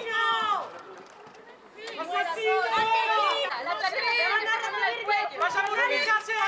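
A crowd shouting, many raised voices overlapping at once, with a short lull between about one and two seconds in before the shouting picks up again.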